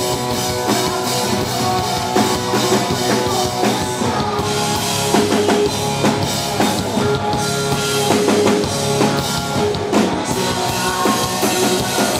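Live rock band playing, with a drum kit and guitars, loud and steady.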